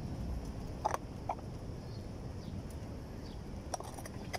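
Mountain bike rolling over paving tiles: a steady low rumble of tyres and wind on the microphone, with a few short sharp ticks about a second in and near the end.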